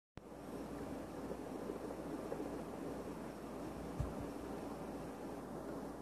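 Faint steady background hiss and rumble, with a single low thump about four seconds in.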